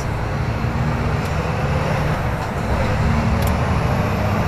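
Scania flatbed lorry's diesel engine and tyre noise heard inside the cab while driving up a motorway slip road, a steady low drone.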